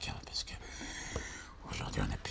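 Speech only: a man talking in an interview, with clear hissing consonants.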